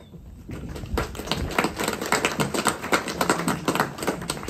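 A small group of people clapping, beginning about half a second in and going on as an even spatter of claps.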